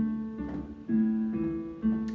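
Casio digital piano playing a repeating low left-hand broken-chord figure, a note, its fifth and its octave, outlining a chord without playing it. The notes follow one another about twice a second, each ringing on.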